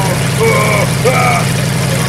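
Engine of a tracked, ski-steered snow vehicle running steadily. Short, high, wavering vocal cries come over it, about four in two seconds.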